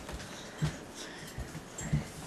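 A few soft, dull thumps and shuffles of a person crawling on hands and knees across a kitchen floor.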